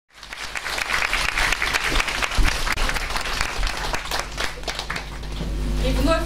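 Audience applauding in a hall, the clapping thinning out near the end.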